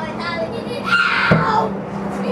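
Distant fireworks display: a short low thump of a shell bursting about a second and a quarter in, right after a brief high wailing tone, over a steady low hum.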